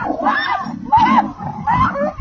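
Several people shouting and yelling at once, in high calls that rise and fall and overlap one another.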